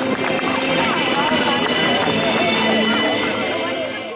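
Indistinct chatter of a crowd of people over background music with long held notes.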